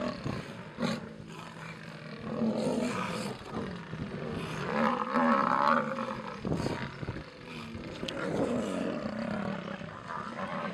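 Lionesses snarling and roaring in several loud bouts, the loudest about halfway through: threat calls at buffalo that are charging them.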